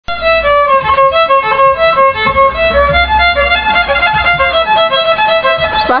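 Solo violin played with the bow: a melody of separate notes stepping up and down several times a second.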